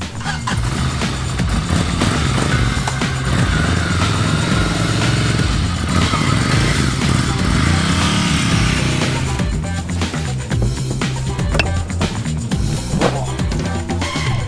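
Background music over a Ducati Scrambler Desert Sled's air-cooled L-twin engine running as the motorcycle is ridden, with the engine rising and falling in a rev around the middle.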